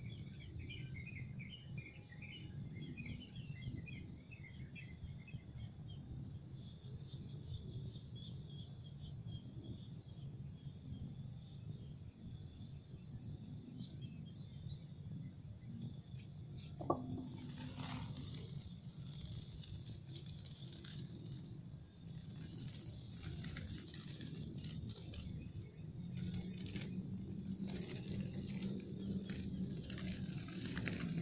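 Insects trilling in a high, pulsing chorus that keeps going throughout, with a few bird chirps in the first seconds. One sharp click comes about halfway through, and a steady low rumble sits underneath.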